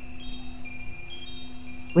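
Chimes ringing: high, bell-like tones start one after another and hang on, over a faint steady low hum.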